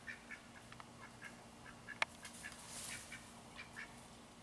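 Pekin ducks giving many short, soft quacks and chatter as they forage, with one sharp click about halfway through.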